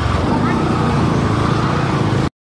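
Steady vehicle noise, like road traffic or a moving motor vehicle, with indistinct voices underneath.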